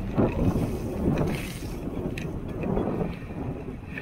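Wind buffeting the microphone of a camera on a moving bicycle, in uneven low rumbling gusts, with bicycle tyres rolling over wet asphalt.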